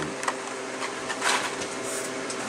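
A plastic blister-card toy car package being handled and moved aside, giving a couple of soft brief rustles over a steady low hum.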